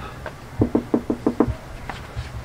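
A quick run of about six knocks on a shack door, rapped in about a second.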